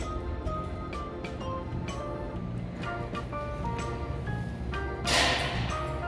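Background music of light, plucked-sounding notes. About five seconds in, a short loud whoosh of noise rises over it and fades away.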